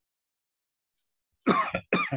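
A man coughing twice in quick succession, near the end.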